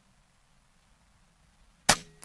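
A single shot from a regulated .25-calibre Air Arms S510 XS Ultimate Sporter PCP air rifle: one sharp crack near the end, after near silence.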